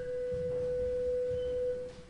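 A single held note, a pure steady tone near the B above middle C, sounded for about two seconds and then stopping. It gives the choir its starting pitch just before the contraltos sing.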